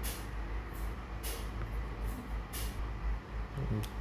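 Steady low background hum with three short hisses, about a second and a quarter apart.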